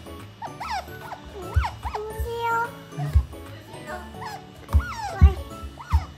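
Asian small-clawed otter giving short, high squeaks that rise and fall in pitch, over background music. A few low thumps break in, the loudest two near the end.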